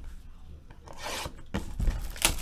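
Hands rubbing and sliding over a shrink-wrapped cardboard box of 2016 Topps High Tek cards, with a rasping scrape about a second in and a few light knocks near the end.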